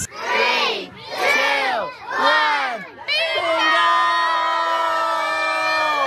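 A group of children shouting together: three short rising-and-falling calls in unison, then one long held shout from about three seconds in.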